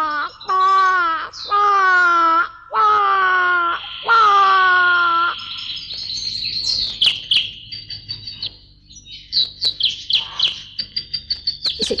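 A woman's voice gives five long wailing cries, each held for about a second. From about halfway, birds chirp in quick high twitters.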